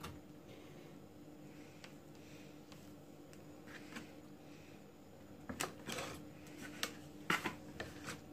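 Quiet handling sounds of sandwich-making on a wooden chopping board, over a faint steady hum. A few faint clicks come first, then a cluster of light knocks and rustles in the second half as bread and cheese are pressed down and a knife is picked up.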